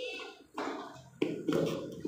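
Soft handling noises of paper letter cards being pushed into slits in a cardboard box, with a sudden knock or rustle about a second in, under faint children's voices.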